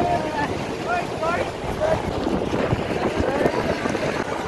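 Wind buffeting the phone's microphone over the running noise of a Mahindra Bolero pickup driving along, with brief shouts and voices from the riders standing in the open back.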